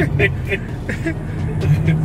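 Car running on the road, heard from inside the cabin as a steady low drone, with brief bits of talk and laughter over it.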